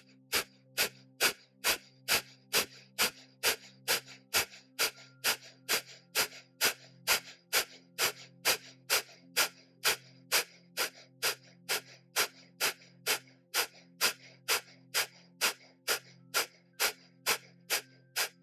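Breath of fire: rapid, rhythmic, forceful exhalations through the nose, a little over two a second and very even, each a short sharp puff of air. Soft sustained background music plays underneath.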